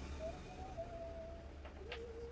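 Faint bird calls: two drawn-out, cooing notes, the second a little lower than the first, with a short click near the end.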